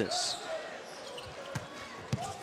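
A basketball dribbled on a hardwood court, with a sharp bounce about one and a half seconds in, over steady arena crowd noise.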